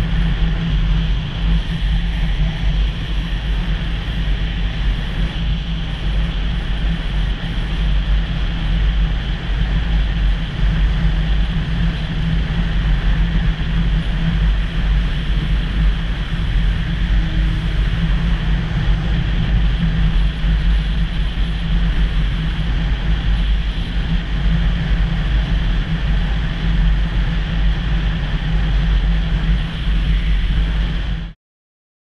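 Motorcycle cruising at a steady road speed, recorded from a camera mounted on the bike: a constant engine drone mixed with heavy wind rush on the microphone, with no change in pace.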